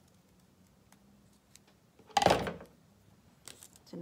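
Scissors cutting small pieces of construction paper: a few faint snips and clicks, with one much louder knock a little over two seconds in.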